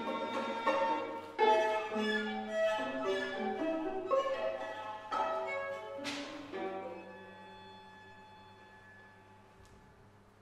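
String quartet of two violins, viola and cello playing a passage of short, changing notes. About six seconds in comes a brief hissing swoop, then the music thins to one quiet held note that fades away.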